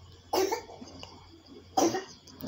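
A man coughing twice, two short coughs about a second and a half apart.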